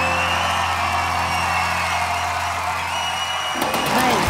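Studio audience cheering and whooping over the last held chord of a ballad's backing music; the chord stops about three and a half seconds in while the cheering goes on.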